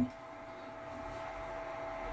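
Faint steady hiss with a thin constant whine, slowly growing a little louder, with no distinct clicks or knocks.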